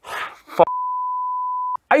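Censor bleep: a single steady, one-pitch electronic beep about a second long, cut in with the voice track muted around it to mask a spoken word, most likely a swear word.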